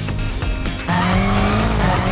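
Background music, then about a second in a BMW M5's engine takes over loudly, running hard at high revs on the circuit with its pitch rising slightly.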